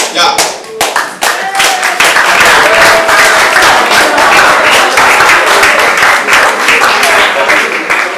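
A room full of students clapping and cheering, with voices shouting through the applause. The clapping builds to full strength about two seconds in and eases off near the end.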